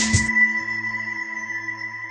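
Intro logo music: a last hit right at the start, then a held chord with a high ringing tone that slowly fades.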